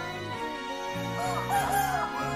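A rooster crowing once in the second half, a loud wavering cry over steady instrumental background music.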